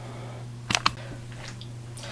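Quiet room tone with a steady low hum, broken by two quick, sharp clicks in close succession a little under a second in.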